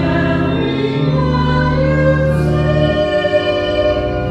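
Voices singing a hymn over sustained accompanying chords, the notes held long and changing a few times.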